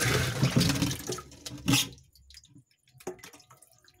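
Water poured from a plastic scoop into a fish tank, splashing for about two seconds and then tailing off into drips. A light knock follows about three seconds in.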